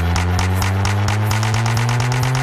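Electronic dance music playing from a DJ set: a held low synth chord under fast, even hi-hat ticks.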